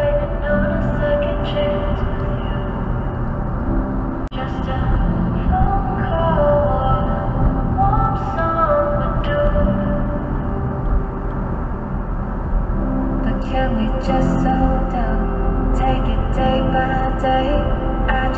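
Background music: a melodic song track over a steady accompaniment, with a brief dropout about four seconds in.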